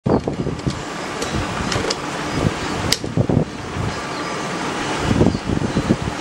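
Steady rushing air noise with irregular low thumps, one sharp click about halfway through and a few fainter clicks earlier.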